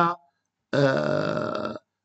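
A man's voice: a word trails off, then after a short pause comes one drawn-out hesitation sound, held at a steady pitch for about a second.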